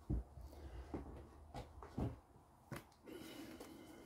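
Light knocks and clicks of things being handled, about five in the first three seconds, over a faint low hum that fades out about two seconds in.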